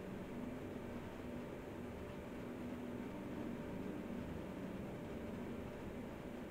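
Faint steady hiss with a low hum: background room tone from the microphone, with no distinct events.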